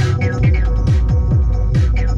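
Electronic music played live on hardware synthesizers and drum machines. A low held drone gives way, about half a second in, to a repeating deep kick drum whose pitch drops on each hit, with short noisy hits about once a second.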